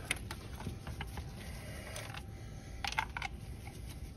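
Faint clicks and handling noises of a compression tester hose being taken off one cylinder and fitted into the next spark plug hole, with a quick run of three clicks about three seconds in.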